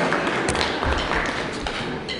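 A few soft, low thumps and taps over the murmur of a large hall.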